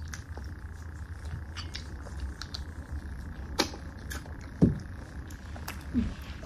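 Quiet cake eating: a few scattered sharp clicks and smacks from spoons on ceramic plates and from mouths, over a low steady hum.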